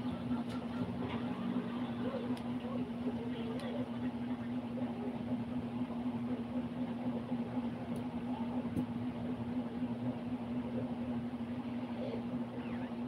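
A steady low hum, like a running motor, holding one pitch without a break, with a couple of faint small clicks near the end.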